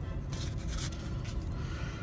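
Faint rustling and rubbing of paper banknotes as a hundred-dollar bill is slid off a stack to show the next one, a few soft brushes over a low steady hum.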